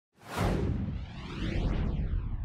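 Whoosh sound effect of an animated TV news intro: a rushing sweep with a low rumble under it, starting just after the beginning.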